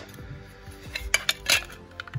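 Clear hard-plastic card cases clicking and clacking against each other as they are handled and stacked: a few sharp clacks, most of them in a quick cluster a little past the middle. Faint background music plays underneath.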